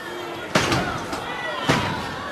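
Two sharp smacks about a second apart from wrestlers grappling in a ring, over crowd chatter and shouts.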